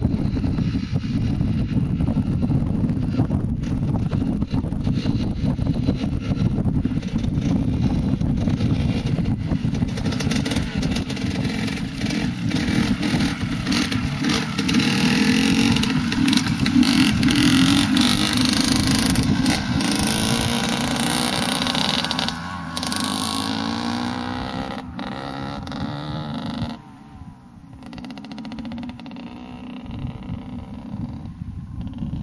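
Two-stroke Honda CR125 motocross bike riding past close, its engine revving up and down and loudest around the middle, with wind rumbling on the microphone.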